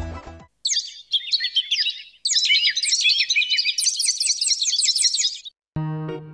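A flock of small birds chirping, with many quick overlapping calls in two stretches broken by a short gap about two seconds in. Music stops just before the birds begin, and a new music cue starts near the end.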